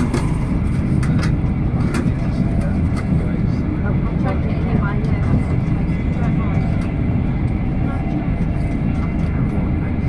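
Running noise inside an InterCity 225 coach travelling at speed: a steady low rumble of the wheels on the rails, with a few sharp clicks from the track in the first two seconds.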